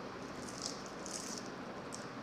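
Two short rustles of hand handling about half a second and a second in, with a brief click near the end, over a steady background hiss.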